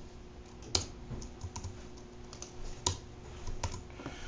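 Typing on a computer keyboard: a handful of scattered keystrokes, with two sharper ones about a second in and near three seconds.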